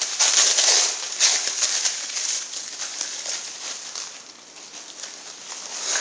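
Thin plastic wrapping crinkling and rustling as it is pulled off a small bike helmet light by hand. It is loudest for the first few seconds, then dies away.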